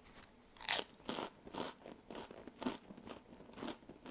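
Chewing a khao taen crispy rice cracker topped with green curry: a string of crisp crunches, about two a second, the loudest being the first bite under a second in.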